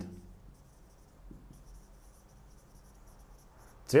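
Dry-erase marker writing on a whiteboard: faint, irregular scratchy strokes from about a second and a half in until near the end.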